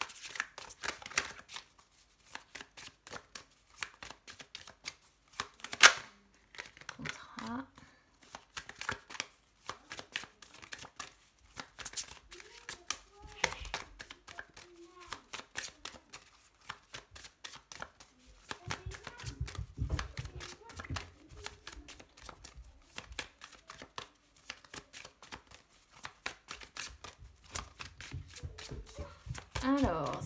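A deck of oracle cards being shuffled by hand, over and over, the cards flicking and slipping against each other in a quick, irregular patter, with one sharp snap about six seconds in.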